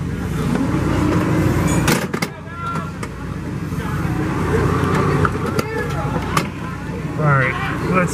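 Steady low hum of fairground ride machinery, with background voices and a few sharp clicks.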